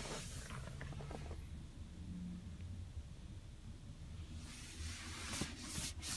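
Quiet car cabin with a faint steady hiss and light rustling, and a few soft clicks near the end.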